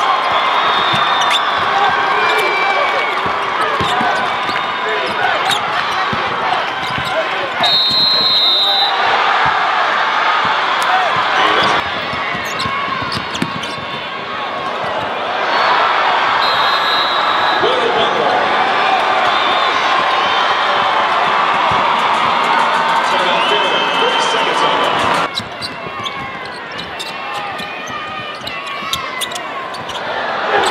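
Live game sound from a basketball arena: a large crowd's steady noise with a basketball bouncing on the hardwood court and short knocks of play. The sound changes abruptly several times as highlight clips cut from one to the next.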